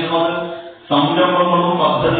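A man's voice speaking in a drawn-out, chant-like delivery, with a brief pause near the middle.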